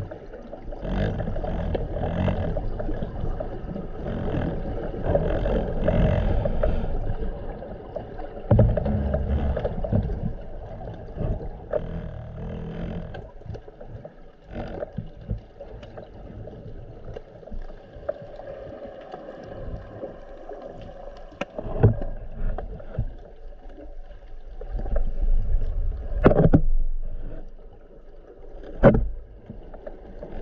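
Underwater sound picked up by a camera moving through the water: a surging, rushing wash of water noise, louder in the first half, with a few sharp knocks or clicks in the second half.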